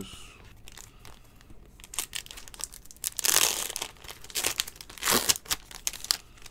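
Silver foil wrapper of a trading card pack being torn open along its crimped seal and crinkled by hand, loudest about three seconds in and again near the end.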